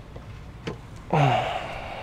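A single light click as a solar panel is handled, then about a second in a man's short wordless vocal sound, falling in pitch.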